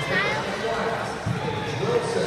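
Mostly speech: people talking over a steady background of crowd noise.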